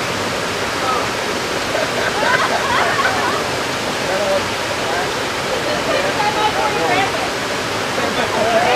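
A small waterfall tumbling down rocks into a pool, a steady unbroken rush of water. Faint voices rise over it a couple of times.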